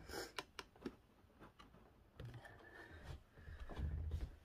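Clicks and knocks of a camera being handled and repositioned, followed by a few soft low thuds.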